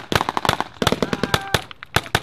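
Rapid rifle fire from several soldiers shooting at once: sharp cracks come several times a second in an uneven, overlapping stream.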